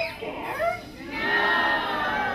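A group of children and adults calling out together, many voices overlapping, in two swells with a short lull between them.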